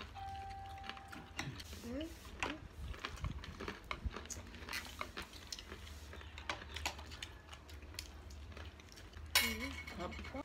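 Close-up eating sounds of fried chicken and rice being eaten by hand: chewing and mouth smacks, with many short sharp clicks and light plate clatter throughout. A few brief hummed murmurs come in, the loudest one near the end, over a steady low hum.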